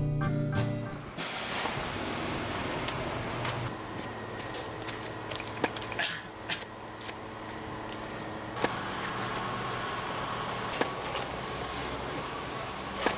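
Plucked-guitar music cuts off about a second in and gives way to a steady rush of outdoor ambient noise on a rail platform, broken by a few sharp clicks and knocks.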